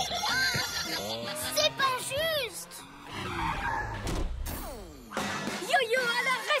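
Cartoon soundtrack: music with short vocal exclamations from the characters. About three seconds in comes a swelling, then fading rush of noise, a small car's engine and skid effect.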